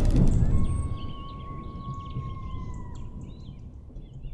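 Logo sting sound design: the tail of a loud crash dies away over the first second, then a single held high tone sounds for about two and a half seconds and dips slightly before fading. Faint bird-like chirps sound behind it.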